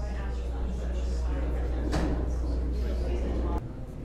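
Indistinct voices over a steady low hum that cuts off suddenly about three and a half seconds in.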